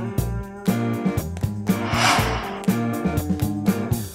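Background music with a steady beat and plucked, guitar-like notes over a bass line. A short burst of hiss sounds about halfway through.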